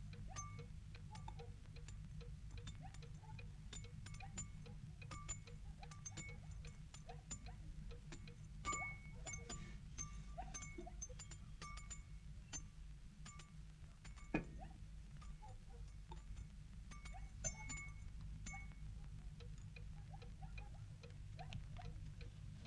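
Faint, low steady hum with light clinks scattered irregularly throughout, each with a short ringing tone.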